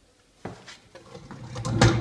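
Workshop handling noises around a wood lathe: a sharp click about half a second in, some rustling and small knocks, then a louder knock with a low thud near the end.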